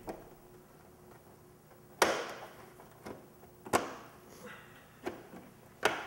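Plastic motorcycle fairing panel being pressed and fitted into place by hand, giving several sharp knocks and snaps at irregular intervals, the loudest about two seconds in.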